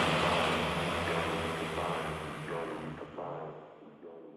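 The closing tail of a drum and bass track after its last hit. A noisy wash with a low held tone underneath fades away steadily and is almost gone by the end.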